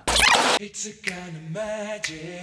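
A half-second whoosh sound effect at the cut, then a few held notes of music.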